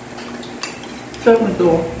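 A few light clinks of cutlery against a dish, about half a second and a second in, before a voice cuts in.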